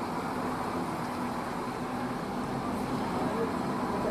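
Diesel engine of a three-axle Mercedes-Benz double-decker coach running steadily at low speed as it turns, a low steady hum under a general wash of traffic noise.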